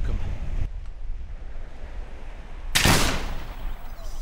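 A single pistol shot about three seconds in, from a flintlock pistol, over steady low wind and surf noise.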